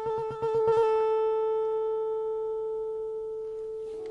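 A krar (Eritrean lyre) played with quick repeated plucks on one note for about the first second, then a single note left ringing and slowly fading away.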